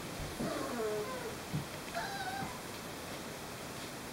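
Young Llewellin setter puppy whining: short cries that fall in pitch in the first second, then a higher, wavering whine about two seconds in.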